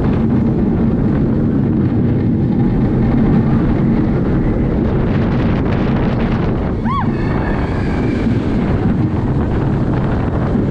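Steel roller coaster train running along its track: a loud steady rumble of wheels and rushing air buffeting the microphone. A brief high squeal that rises and falls comes about seven seconds in.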